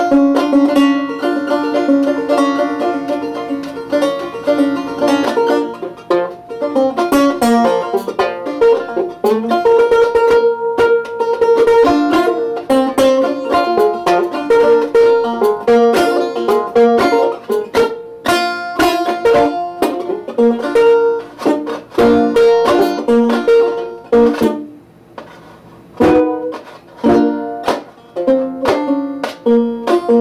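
An 1885 S.S. Stewart Universal Favorite five-string banjo being played, a steady run of plucked notes, with its fifth string capoed at the third fret by a clothespin-style capo. The playing drops off briefly about 25 seconds in, then picks up again.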